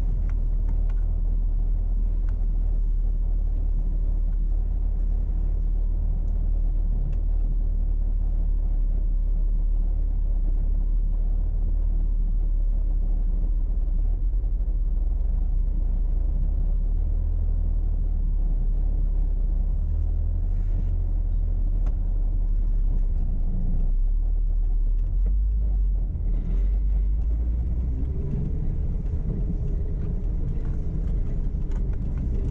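Steady low rumble of a 4x4's engine running at low revs as the vehicle crawls up a rocky dirt trail, with a short rise in revs near the end.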